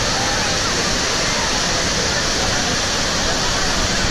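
Steady rush of water in a body water-slide tube, heard from a camera carried down the slide by the rider.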